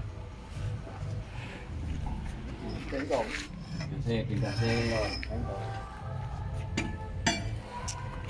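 Faint voices in the background over a low steady hum, with a few sharp metal clinks of hand tools: one at the start and two close together near the end.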